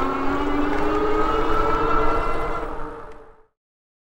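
Fat-tire electric bike riding along at speed: a steady whine rising slightly in pitch over low wind rumble on the microphone, fading out about three and a half seconds in.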